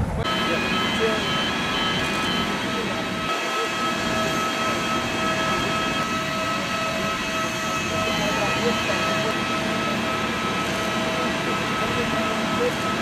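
Steady jet whine of a parked airliner on the apron: several high tones held over a low rumble.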